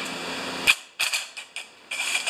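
A few sharp metallic clicks and clinks from the carburetor parts of a small Tecumseh engine as they are handled during removal: one strong click about two-thirds of a second in, a quick irregular run of them around the middle, and single ones near the end.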